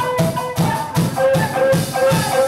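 Live rock band playing: distorted electric guitars over a drum kit, with a steady driving beat of about four strikes a second.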